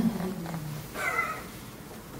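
Brief, soft laughter in two short bursts, the second about a second in.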